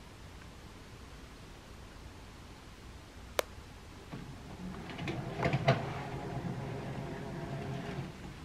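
Motorised curtain track running as the curtains open, a low hum with a few rattling clicks starting about four seconds in. A single sharp click comes just before it.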